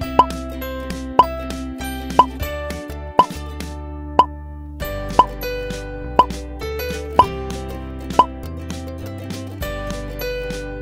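A short rising pop sound effect repeating about once a second, nine times, each one marking a toy accessory appearing in stop-motion. Light instrumental background music plays underneath throughout.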